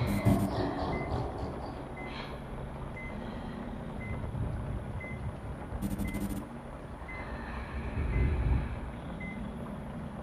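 Bedside patient monitor beeping steadily about once a second over a low rumbling drone. A quick cluster of sharp clicks comes about six seconds in, and the rumble swells briefly just after eight seconds.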